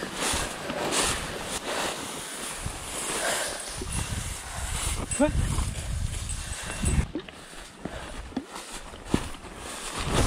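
Tall dry grass rustling and crackling as someone walks through it, a steady brushing noise that thins out after about seven seconds into a few separate sharper snaps.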